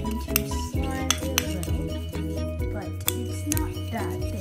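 A metal utensil clinking against the inside of a ceramic bowl while a thin mixture is stirred, with a few sharp clinks, over steady background music.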